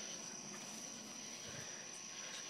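Steady high-pitched trilling of night insects in the background, with light handling noise and a soft thump about one and a half seconds in.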